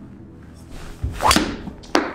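Full golf driver swing: a rising whoosh of the club, then the loud crack of the clubhead striking the golf ball. Just before the end comes a second sharp smack as the ball hits the padded office chair and deflects off it.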